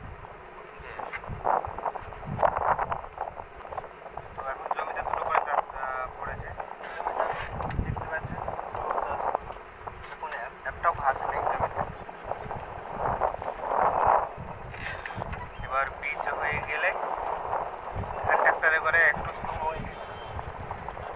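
A man talking, with wind buffeting the microphone.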